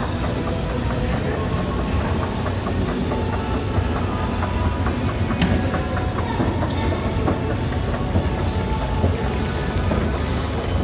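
A 1982 Montgomery G&P escalator running under a rider: a steady low rumble from the drive and chain with irregular clicking and clattering from the steps, one sharper click about halfway through.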